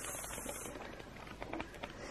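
Faint rustle and light ticks of paper as colouring-book pages are flipped.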